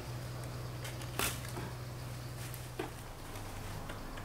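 Dry, dead weeds being gripped and pulled from sandy soil by a gloved hand, giving a few short crackles and rustles, the sharpest about a second in, over a steady low hum.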